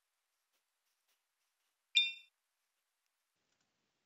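A single short, bright computer alert ding about two seconds in, dying away quickly; otherwise near silence.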